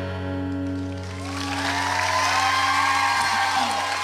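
The final chord of an acoustic guitar rings out and fades, then audience applause and cheering swell up about a second in.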